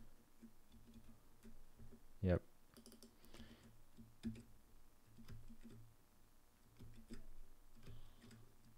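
Computer keyboard and mouse clicks, light taps scattered throughout. About two seconds in comes one short vocal sound, a brief hum.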